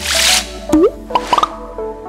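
Animated logo sound effects: a whoosh, then a short rising bubbly pop and a few quick plops, as a light music jingle starts underneath.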